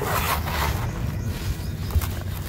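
Hands squeezing and crumbling dry, gritty sand-cement mix in a plastic bucket: a grainy crunching rustle, strongest in the first second, with scattered small crackles, over a steady low rumble.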